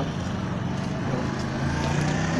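An engine running steadily nearby, a low even hum with no change in pitch.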